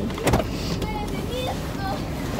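A single sharp click or knock about a third of a second in, then faint distant voices over a steady low rumble inside a parked car.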